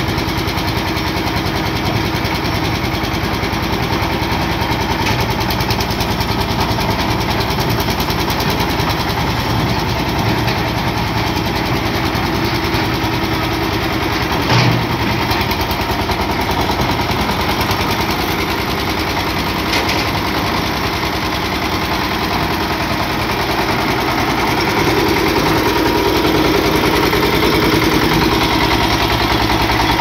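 A concrete mixer's engine running steadily with a rapid, even pulse. There is one sharp knock about halfway through, and the sound grows a little louder near the end.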